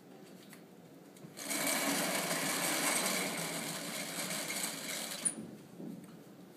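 Steady mechanical whirring like a small motor, starting about a second and a half in and stopping with a click about four seconds later.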